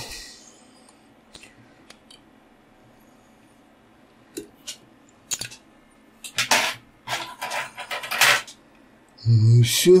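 Light clicks and scrapes of fly-tying tools and thread being handled while the finishing knot is tied off on the fly: a few isolated clicks, then a denser run of short scraping sounds about six to eight seconds in.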